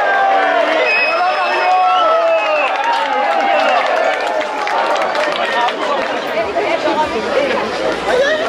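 Crowd of spectators shouting and calling out, many voices overlapping throughout.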